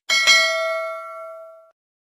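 Notification-bell chime sound effect: a bright ding struck twice in quick succession that rings on and fades away within about a second and a half.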